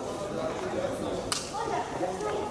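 Background chatter of several people talking, with one sharp crack a little over a second in.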